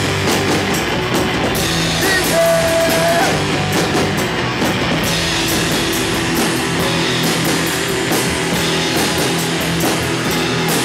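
Live rock band playing: electric guitars over a full drum kit with steady drum strokes. About two seconds in, a long high held note bends into pitch and is sustained for about a second.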